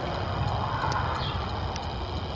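Horses moving on the soft dirt footing of an indoor riding arena: dull hoofbeats, with a few faint sharp ticks.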